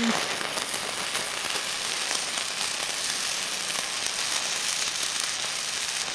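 Homemade magnesium pencil flare burning with a steady hiss and scattered faint crackles. The burn is slow and uneven, which its maker puts down to damp composition.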